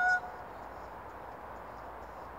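A woman's high, held sung note ending abruptly a moment in, followed by faint, even outdoor hiss.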